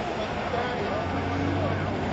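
A vehicle engine running steadily as a low drone, with a crowd of spectators talking faintly in the background.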